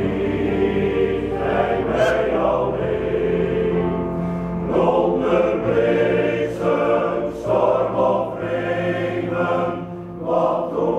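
Men's choir singing a sustained hymn-like song, with several held notes in low voices.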